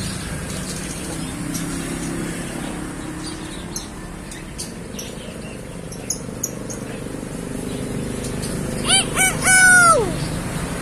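A common hill myna gives a loud, crowing-like call near the end: two short notes, then a longer held note that drops away. Before it there is only steady low background noise.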